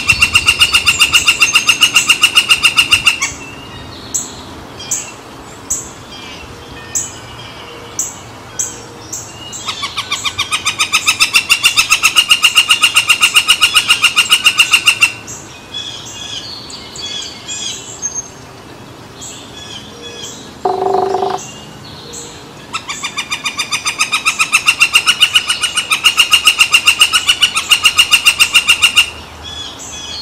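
A woodpecker calling: three long runs of fast, evenly repeated high notes, each lasting several seconds, with single sharp call notes in between. A brief low tone sounds about two-thirds of the way through.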